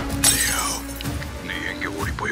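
Glass pane of a framed picture shattering under a hammer blow about a quarter second in, over background music with a steady low drone.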